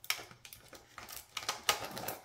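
Irregular clicks and light taps of plastic as a glitter LED candle, held down with glue dots, is worked loose and pulled out of a plastic-bottle lantern. The sharpest click comes near the end.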